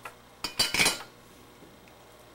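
Metallic clatter of a small metal tool being set down on the workbench: a faint click at the start, then a quick run of several sharp knocks about half a second in.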